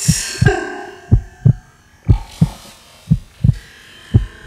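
A heartbeat sound effect: low double thuds, one pair about every second, as electronic music fades out in the first second.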